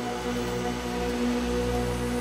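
Film score music: held, steady low chords, with no beat.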